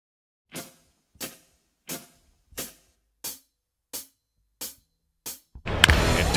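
Intro music of eight evenly spaced cymbal-like hits, about one and a half a second, each ringing out briefly into silence. Crowd noise from the ballgame broadcast cuts in just before the end.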